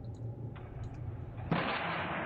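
Slowed-down soundtrack of a longsword sparring clip: a sudden loud, muffled rushing noise with no high end breaks in about three-quarters of the way through and holds steady. Before it there is only a low hum with a few faint clicks.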